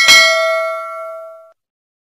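Notification-bell sound effect: a single bright bell ding that rings out and fades away over about a second and a half.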